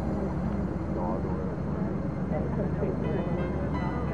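Indistinct voices of people talking in the distance over a steady low rumble.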